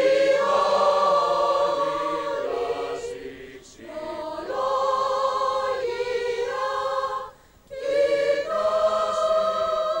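Choir singing sustained chords in long phrases, with a short pause between phrases about seven and a half seconds in.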